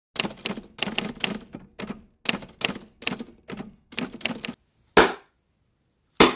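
Typewriter keys clacking in quick runs of strokes with short pauses between them, ending with a single heavier stroke about five seconds in.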